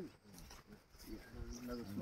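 Faint men's voices in a lull between louder speech, with a drawn-out low vocal sound in the second half.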